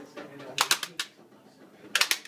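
Sharp open-hand slaps on a person in playful hitting: a quick run of about four slaps between half a second and a second in, then another at the very end.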